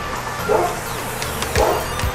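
Basset hound giving two short barks, about half a second and a second and a half in.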